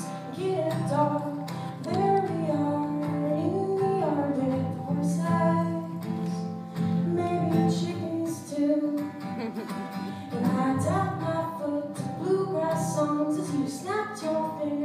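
Acoustic guitar strummed in a steady rhythm, with a wordless sung melody over it.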